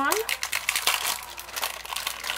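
A plastic packaging bag crinkling in the hands as it is opened, a dense run of irregular crackles.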